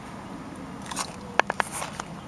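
A few short, sharp clicks and crackles, clustered in the second half.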